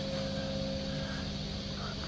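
Steady background hum of a large indoor hall, a low even drone with a faint held tone above it, typical of ventilation running.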